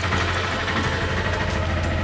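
A steady, low mechanical hum, like an engine running at idle.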